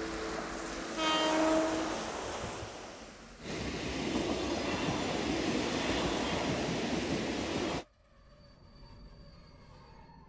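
A loud horn-like blast made of several pitches held together for about a second, then a loud steady rushing noise that cuts off suddenly near the end, leaving quiet room tone.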